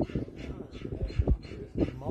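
German Shepherd working dog making short, excited vocal sounds while heeling. Two loud low thumps come about a second in and near the end.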